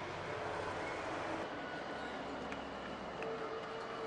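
Steady road and engine noise of a car driving on a highway, heard from inside the car: an even rumble and hiss with no break.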